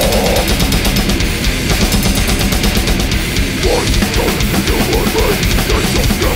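Heavy metal instrumental passage: distorted electric guitars over fast, dense drumming. A higher guitar line that bends in pitch comes in a little past halfway.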